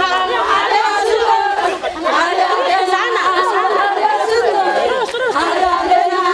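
An unaccompanied crowd of women's voices chanting and calling out together, many voices overlapping.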